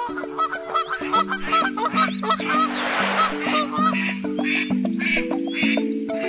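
Cartoon duck quacks, many short calls in quick succession, over an instrumental children's-song intro with held notes. A brief rushing noise comes about halfway through.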